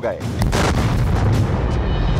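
A barrage of explosion booms, heavy and rumbling, starting suddenly about half a second in and running on for about a second and a half.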